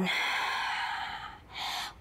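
A woman's long audible exhale through the mouth, lasting about a second and a half, as she rolls her spine down into a forward bend, followed by a shorter breath near the end.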